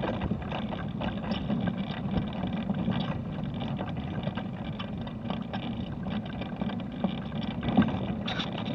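Mobility scooter travelling along a road: steady motor and wheel rolling noise with frequent small knocks and rattles from the bumpy surface.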